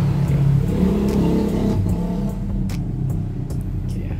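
A low engine rumble like a passing motor vehicle, strongest in the first two seconds and then fading, with a few light clicks in the second half.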